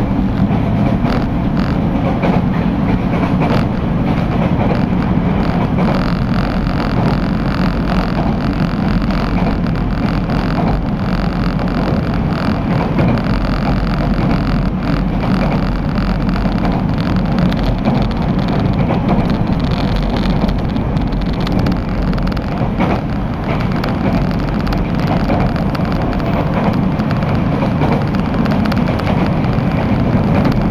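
Running noise heard inside a local train travelling at speed: a steady low rumble of the wheels on the rails, with a few faint clicks now and then.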